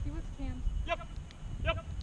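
Wind rumbling on the microphone, with two short high-pitched calls, one about a second in and one near the end.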